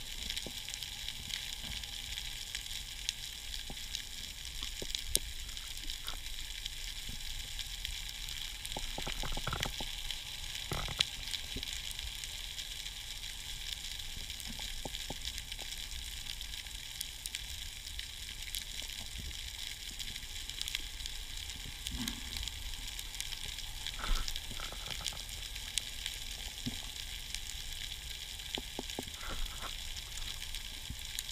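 Underwater ambience: a steady crackling hiss of many tiny clicks, with a few louder clicks and knocks about ten seconds in and again near twenty-four seconds.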